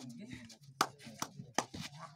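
Sharp hand smacks, four of them at uneven spacing, over a low murmur of voices.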